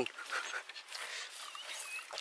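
A faint high whine from an animal near the end, over a soft hiss with a few light clicks.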